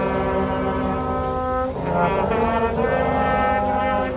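A brass band with trombones playing slow, sustained chords, probably the accompaniment to a hymn. The held notes change every second or so, with a short break about two seconds in.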